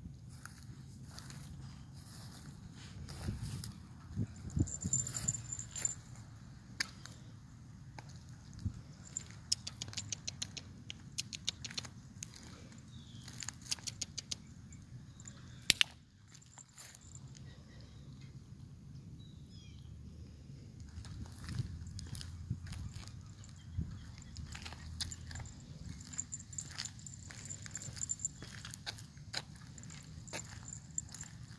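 Scattered light ticks and rustles over a low rumble, with one sharp double click, much louder than the rest, about sixteen seconds in: a pet-training clicker pressed and released.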